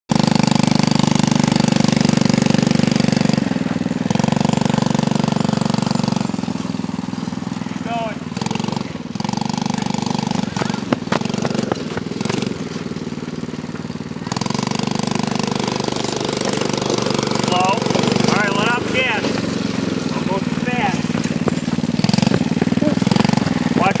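Small youth ATV engine running steadily, its note dropping back for several seconds in the middle and picking up again about two-thirds of the way through.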